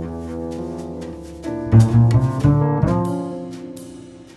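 Acoustic jazz with the double bass to the fore, playing a line of low notes. The notes are loudest about two seconds in, and the music thins and grows quieter toward the end.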